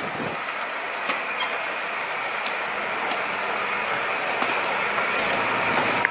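Alfa Romeo saloon's engine running at idle, a steady drone that grows slightly louder.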